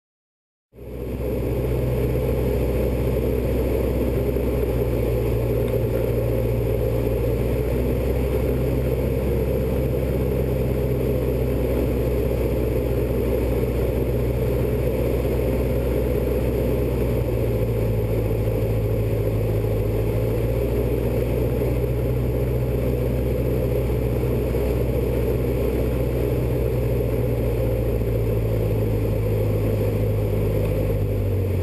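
Single piston engine and propeller of a Robin light aircraft, heard inside the cockpit, running in a steady drone while the plane descends towards the runway. The sound cuts in after a half-second gap at the start, and the note shifts slightly about halfway through.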